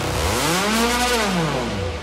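Electronic dance music with the beat dropped out: a synthesizer tone sweeps up in pitch and back down over about two seconds under a wash of noise, a transition effect in the mix.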